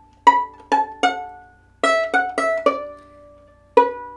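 Violin strings plucked pizzicato, picking out a melody note by note: eight single notes, each ringing and dying away. Three notes, a short pause, four quicker notes, then one more near the end.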